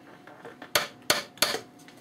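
Small brass hammer tapping a finishing nail into a wooden panel: three light taps about a third of a second apart.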